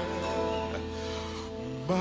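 Live band with orchestra accompanying a slow soul ballad, holding a sustained chord between sung lines. Near the end a singer's voice slides up into the next phrase and the music gets louder.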